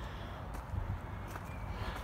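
Faint outdoor background noise: a steady low rumble with a few faint ticks.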